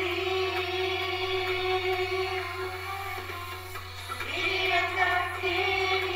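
Female vocal quartet singing together into handheld microphones, holding long sustained notes; the voices fade slightly and then swell again about four seconds in.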